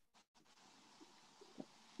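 Near silence, with a few faint, brief sounds about a second in and again near the end.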